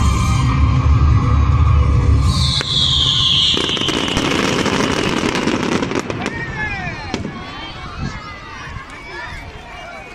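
Fireworks display: bangs and crackles over loud music with a heavy bass that stops about two and a half seconds in. A high tone falls slowly in pitch after that. The bangs thin out and the level drops as crowd voices take over.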